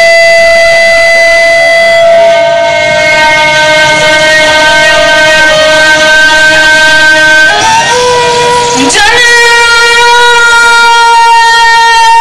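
Loud live folk music played through a sound system: long, steady held notes that move to a new pitch about seven and a half seconds in, and again near nine seconds.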